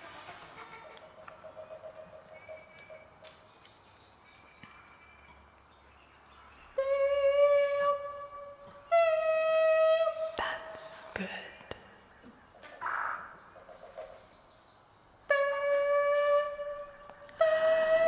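Contemporary chamber music: after several seconds of faint, sparse sounds, a wind instrument plays four long held notes, each starting suddenly and lasting a second or two, with a few sharp clicks between them.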